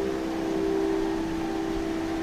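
A steady drone of two or three held tones over a constant hiss.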